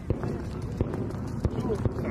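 Aerial fireworks shells bursting in a run of sharp bangs, about four in two seconds, over a low rumble, with crowd voices alongside.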